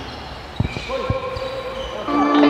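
A basketball bouncing a few times on a hardwood court, low short thumps, with held tones sounding under the later part.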